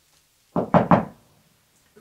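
Three quick knocks on a door, about half a second in.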